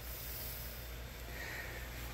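Faint steady background noise with a low hum, and a soft hiss about one and a half seconds in.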